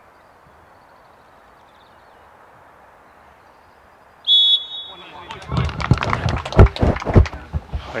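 Hushed football ground for about four seconds, then a short blast on a referee's whistle, followed at once by loud hand clapping.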